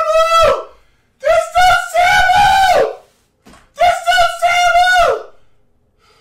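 A man screaming in frustration: three long, high-pitched yells, the first trailing off about half a second in, the second held for nearly two seconds, the third shorter near the end.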